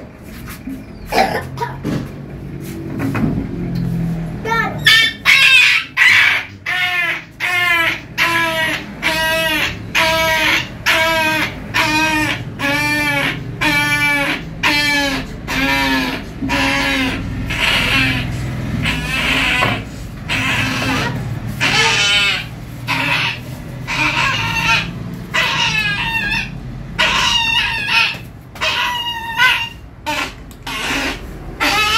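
A puppy crying in short, high yelps, one after another at about two a second, while it is held and dosed by mouth: a sign of distress at the handling.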